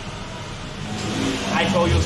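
Street traffic noise, with a low motor-vehicle engine hum that builds up and grows louder from about a second in. Brief voices come in near the end.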